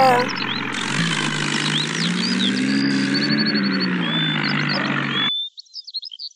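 Tractor engine running steadily, its pitch rising and falling once in the middle, with birds chirping over it. The engine cuts off suddenly about five seconds in, leaving only the bird chirps.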